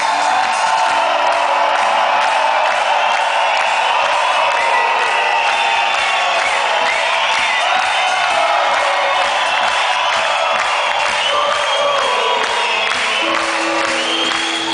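Live band music at a festival, heard from inside a large audience that is cheering and whooping over it. The crowd's voices sit as loud as the band, and the bass is thin.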